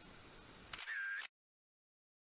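Faint rush of river water, then about three-quarters of a second in a brief camera-shutter sound lasting about half a second, with a short tone in it, after which the sound cuts to dead silence as the picture changes to a still photo.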